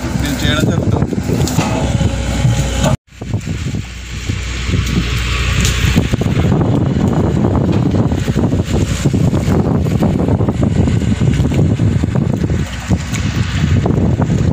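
Wind buffeting an outdoor microphone: a loud, steady rumbling rush that breaks off briefly about three seconds in, then runs on.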